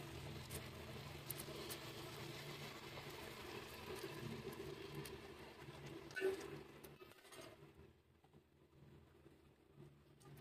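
Pork pieces sizzling and crackling in oil in a pan, over a steady low hum, with a short knock about six seconds in. The sizzle drops to a faint level over the last couple of seconds.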